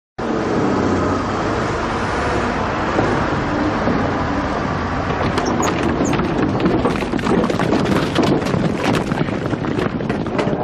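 A steady rumble of a running motor vehicle, joined about halfway through by a growing clatter of sharp knocks.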